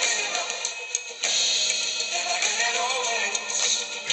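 A song's backing track with drums and hi-hat, with an electric bass guitar played along to it. The low end drops out briefly about a second in, then the groove comes back.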